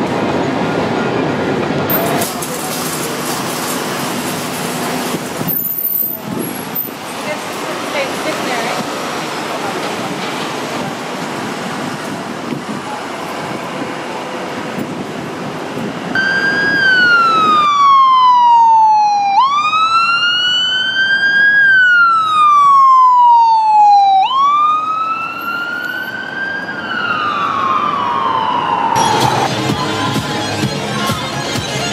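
An emergency vehicle's siren on wail, sweeping slowly down and up in pitch, each sweep taking about two and a half seconds, starting about halfway through. Before it there is a steady noisy rush that changes abruptly a couple of times.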